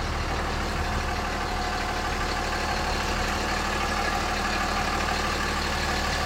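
5.9L Cummins inline-six turbo-diesel of a 2006 Dodge Ram 2500 idling steadily, heard from inside the cab as an even hum.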